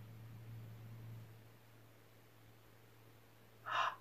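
Near silence with a faint, steady low hum that fades in the first second, then a short intake of breath near the end.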